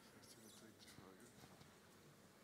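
Near silence: hall room tone with a few faint, high scratchy rustles in the first second.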